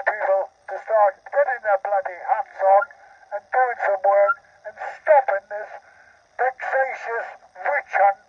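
A man speaking through a handheld megaphone in continuous phrases with short pauses. The voice sounds thin and narrow, with no low end.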